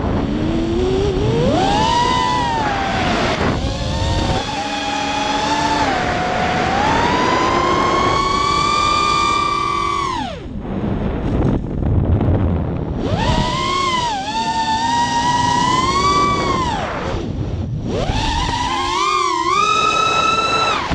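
FPV racing quadcopter's motors and propellers whining, picked up by the onboard camera. The pitch rises and falls with the throttle, dropping away sharply about ten seconds in and again near the end before climbing back.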